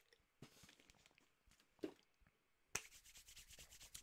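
Mostly near silence with a few faint clicks, then near the end a click and a faint, quick back-and-forth rubbing of hands being rubbed together.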